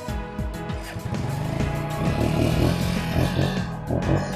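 Background film music over a small motorcycle engine that revs and pulls away, its low rumble coming up about a second in.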